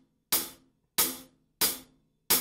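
Tight closed hi-hat, the pedal pressed down hard so the two cymbals are held firmly together: three short, crisp hits about two-thirds of a second apart, each dying away quickly.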